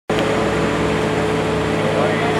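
Diesel engine of a small ride-on tandem asphalt roller running steadily, a constant drone with a fixed pitch.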